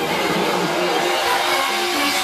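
Electronic dance music from a live DJ set, played loud over a club PA and recorded close to the stage, with sustained synth tones and little bass coming through.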